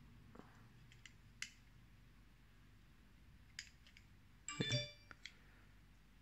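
Faint handling clicks, then about four and a half seconds in a brief metallic clink with a short ringing tone: a steel digital caliper knocking against a knife's steel blade as it is handled and taken off.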